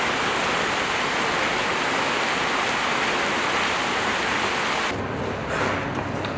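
Fountain jets splashing water steadily, a dense even rush of falling water that cuts off abruptly near the end.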